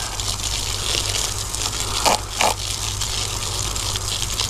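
Garden hose spray nozzle running a steady stream of water that splashes into the soil of a potted tomato plant.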